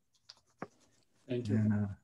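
A short, near-silent pause with one sharp click a little over half a second in, then a man starts speaking ("Thank...").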